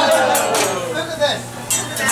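Sharp metal clinks of utensils on a hibachi griddle, a couple about half a second in and a quick pair near the end, after a voice trails off in a long falling call.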